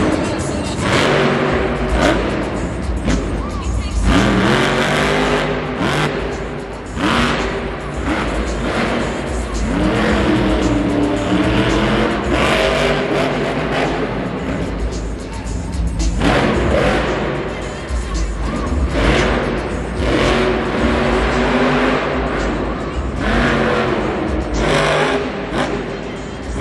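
Monster Mutt Dalmatian monster truck's supercharged V8 revving hard and dropping back again and again as it drives and jumps on the dirt track, with arena music playing underneath.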